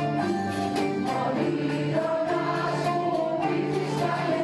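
Mixed choir singing an Asia Minor (Mikrasiatiko) song, accompanied by a small ensemble of guitar and lap-held zithers, in long held notes that change every second or so.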